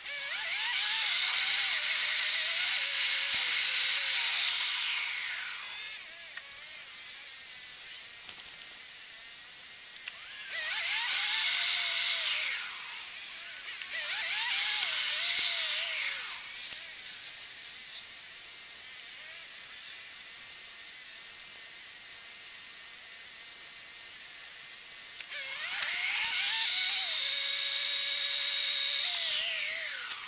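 A moving car's whine, heard from inside the cabin through a dashcam. It rises in pitch, holds and falls away four times, with quieter steady running noise in between.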